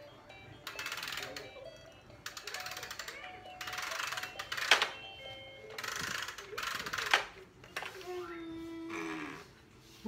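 Battery-powered electronic toy turtle playing its built-in tune and sound effects: short snippets of melody alternate with noisy bursts about a second long, and a single note is held near the end.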